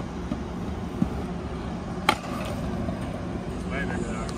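Stunt scooter wheels rolling on concrete with a steady low rumble, a light knock about a second in, then a sharp smack about two seconds in as the scooter lands a jump.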